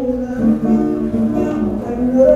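Nylon-string classical guitar being played, a melody of held, ringing notes.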